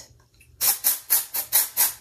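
Aerosol can of Batiste dry shampoo sprayed into a synthetic wig in a run of short hisses, about four a second, starting about half a second in.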